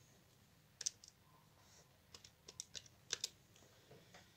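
Plastic keys of a Joinus scientific calculator pressed in a quick series of light clicks, about ten presses: a pair about a second in, the rest bunched in the last two seconds.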